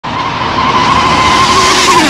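Dual-motor RC speed-run car with twin brushless motors passing at high speed: a loud, steady high-pitched motor whine over a rushing roar of tyres on tarmac.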